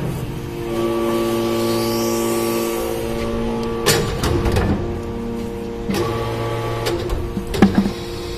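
Hydraulic iron-chip briquetting press running: a steady pump hum made of several held tones, broken by metallic knocks about four, six and seven and a half seconds in as the press cycles.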